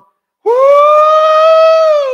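A man's loud, high-pitched "woo" whoop: it slides up at the start, is held on one pitch for about a second and a half, and falls off at the end.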